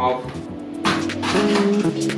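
Background music with held notes. About a second in, a short crisp crunch of a chef's knife cutting through a raw fennel bulb onto a wooden chopping board.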